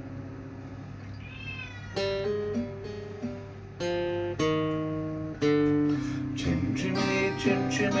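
Acoustic guitar strumming chords in an instrumental break, with fresh chords struck about every second or two and busier playing near the end. A cat meows once, briefly, about a second and a half in.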